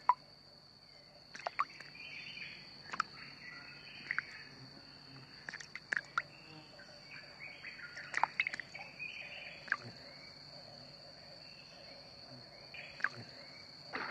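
Tropical wildlife ambience: a steady high-pitched insect drone, with scattered short bird chirps and sharp clicks over it.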